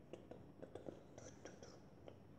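Faint whispering from a child, with a few soft clicks, close to silence.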